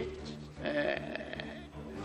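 A man's faint, drawn-out hesitation sound, "uh", in a pause in his speech, over a steady low hum.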